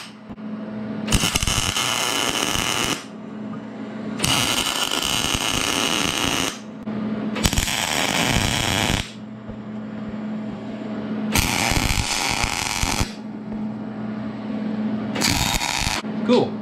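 Wire-feed welder arc crackling in five short bursts, each a tack weld joining a mild-steel truss to a preheated cast-steel axle differential housing. A steady low hum continues between the bursts.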